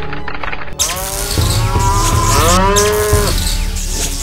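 Cartoon sound effect of bulls mooing, two arching calls with the second longer, over a loud crackling electric hiss that starts about a second in, as the machine sends current through them. Background music plays underneath.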